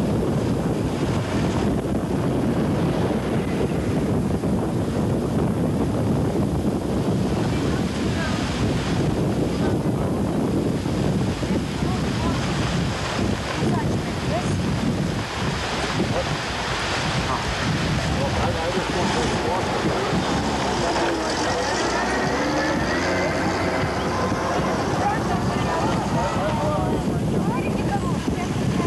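Strong wind blowing across the microphone, a steady loud rush, with indistinct voices faintly under it in the second half.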